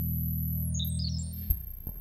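Electric bass note held low and steady through a gesture-controlled effects processor, with a quick run of high electronic blips stepping down in pitch midway. The note stops about one and a half seconds in, followed by a couple of short clicks.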